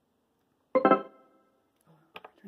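Yamaha PSS-A50 mini keyboard sounding a short burst of notes through its built-in speaker about three quarters of a second in, fading out within about half a second.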